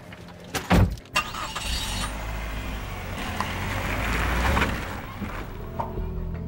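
A car door shuts with a loud thump about a second in, then a car pulls away, its engine and tyre noise building and then easing off near the end.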